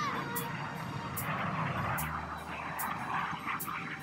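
Jet noise from Red Arrows BAE Hawk jets flying past low, with a falling pitch right at the start, over background music with a steady beat.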